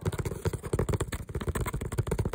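Fast finger tapping on the fabric lining inside a handbag: a rapid run of soft, dull taps, about a dozen a second.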